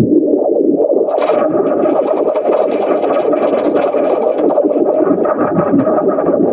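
Logo ident audio heavily distorted by effects: a continuous harsh, noisy wash over a steady droning band, with crackling hiss added from about a second in.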